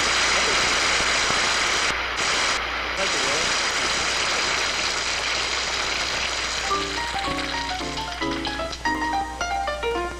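Studio audience applauding. About seven seconds in, a jazz piano starts playing a quick run of single notes and chords.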